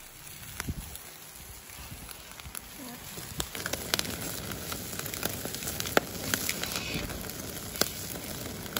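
Charcoal grill fire crackling and popping under a steady hiss of food sizzling on the wire grate. The sharp pops come thicker from about three seconds in, as the flames flare up.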